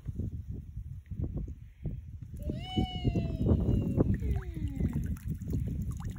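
Water sloshing and splashing as a landing net scoops blue crabs up out of the water. From about two and a half seconds in, a high-pitched voice calls out in a long gliding tone, followed by a few shorter falling calls.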